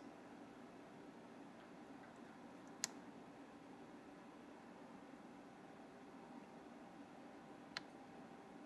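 Near silence: faint room tone, broken by two small sharp clicks, one about three seconds in and a fainter one near the end, from handling the buttons of a handheld thermal camera.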